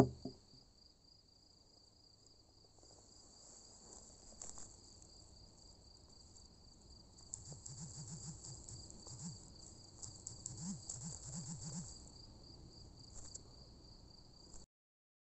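Crickets chirring steadily and faintly, a continuous high, pulsing trill, with a few faint low wavering sounds between about seven and twelve seconds in.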